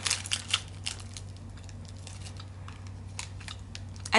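Plastic snack-bar wrapper crinkling in the hands: a quick run of crackles in the first second, then a few scattered ones, one near three seconds in, over a low steady hum.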